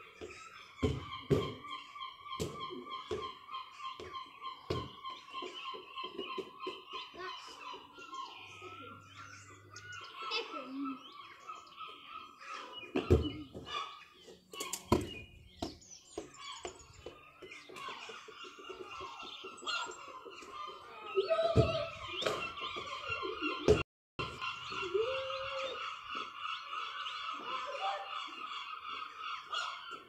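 Birds chirping and trilling continuously for long stretches, with scattered sharp knocks and thuds, a few of them loud.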